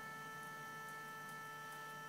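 A faint, steady 440 Hz test tone run through a Fuzz Face-style fuzz pedal, heard as a buzzy tone with a stack of added harmonics. Its input level is being turned down, so the balance of those harmonics is shifting.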